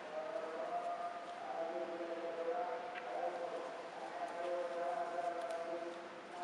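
Sustained melodic tones, held for about a second at a time and shifting slowly in pitch, under the light handling noise of the tissue work.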